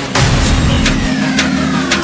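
Dramatic background music with a sound effect: a loud hit near the start, then a tone that falls steadily in pitch through the second half like a descending whistle.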